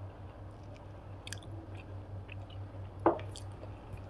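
Dal curry poured from a small stainless-steel bowl onto rice and worked in by hand, with soft wet squishing and small clicks over a low steady hum. About three seconds in comes one short, loud clunk as the steel bowl is set down on the wooden table.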